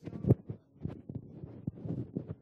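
A run of irregular muffled thumps and knocks, the loudest about a third of a second in.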